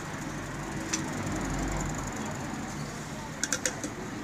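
Light clinks of a glass pen against a glass ink bottle while the pen is dipped in a new colour: one click about a second in, then a quick run of several clicks near the end, over a steady background hum.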